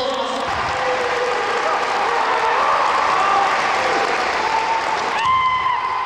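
Spectators applauding, a steady wash of clapping, with a long, held shout near the end: a kendo fencer's kiai as the bout opens.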